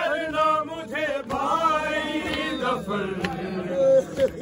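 Men chanting a noha, a Shia mourning lament, their voices sliding through long, drawn-out melodic lines.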